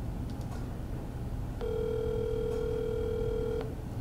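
Ringback tone from a smartphone's speaker: one steady two-second ring starting about one and a half seconds in, the sign that the outgoing call is ringing at the other end.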